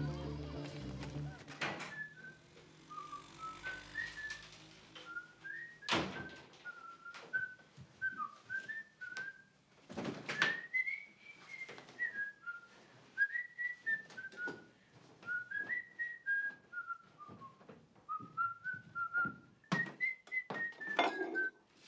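A person whistling a slow tune, its single line of notes stepping up and down, with a few sharp knocks and clatters in between, the loudest about six and ten seconds in. Low music fades out in the first two seconds.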